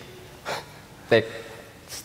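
Speech only: a man speaking haltingly on a headset microphone, with a short intake of breath and a single word between pauses.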